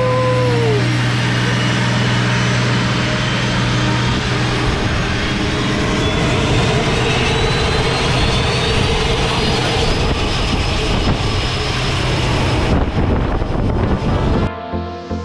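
Turboprop skydiving plane's engines running on the ground: a loud, steady low drone with a faint high turbine whine.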